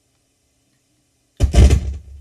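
Near silence, then about one and a half seconds in a sudden loud pop and rumble through the PA speakers as the condenser microphone is put back on 48 V phantom power and comes alive.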